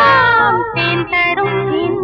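The closing bars of a Tamil film song: a singer's held note slides down and ends within the first half-second, then the accompaniment goes on with short repeated notes over a steady bass, getting gradually quieter.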